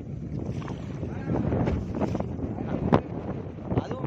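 Wind buffeting the microphone over a steady low rumble from a boat at sea, with a sharp click about three seconds in.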